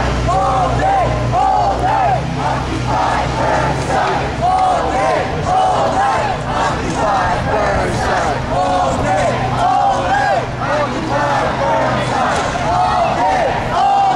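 A crowd of marching protesters chanting loudly together, the same short chant repeating over and over. A low steady hum runs beneath until near the end.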